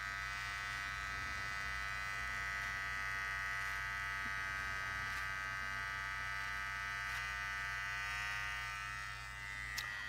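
Electric hair clippers running with a steady buzz, held against the short hair at the side of the head; the level dips slightly near the end.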